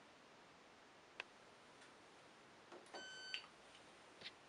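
A single short electronic beep from a Candy Smart Touch washing machine's control panel, about three seconds in, lasting under half a second, with a faint click a couple of seconds before it in otherwise quiet room tone.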